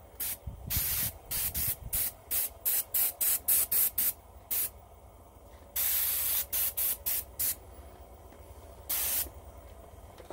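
Iwata airbrush spraying in many short triggered spurts of hiss, several in quick succession, with a longer spray about six seconds in and another near the end.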